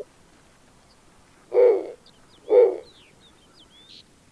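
Recording of a snowy owl hooting: two low, short hoots about a second apart.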